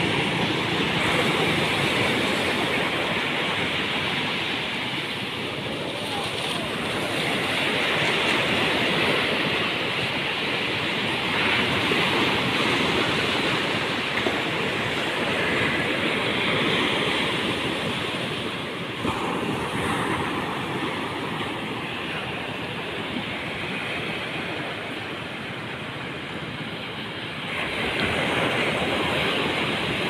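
Surf breaking and washing up a flat sandy beach: a continuous rush that swells and eases every few seconds as each wave comes in.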